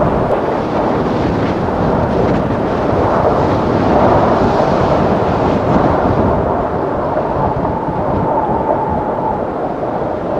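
Strong wind buffeting the camera's microphone on an exposed summit: a loud, steady rumble with no let-up. A faint thin whistle joins it in the last few seconds.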